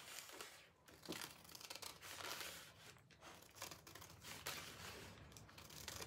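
Scissors snipping the border off a sheet of thin rice decoupage paper, with the paper crinkling as it is handled; faint and irregular.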